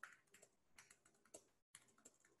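Faint computer keyboard typing: quick, uneven keystrokes, several a second.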